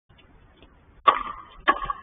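Two pickleball paddle hits on the hollow plastic ball, a little over half a second apart, each a sharp pop with a short ring.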